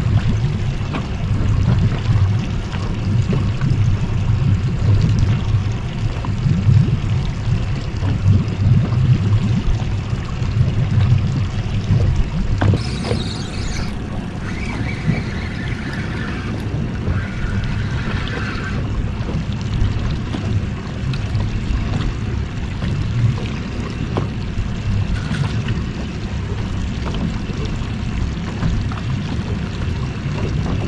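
Wind rumbling on the microphone and water lapping against the hull of a small boat drifting on open water. The rumble is steady throughout, with a few faint higher sounds near the middle.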